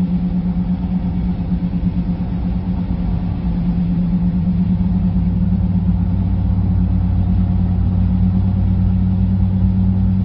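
A car driving along a road, its engine and tyres making a steady low drone with a constant hum.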